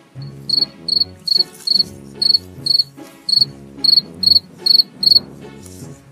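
Cricket chirping sound effect: a run of about a dozen short, shrill chirps, roughly two a second. It is the stock comic cue for an awkward, silent wait.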